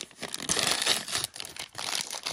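Crinkly printed paper accessory packet crinkling and crackling as it is handled and opened by hand, busiest in the first second or so.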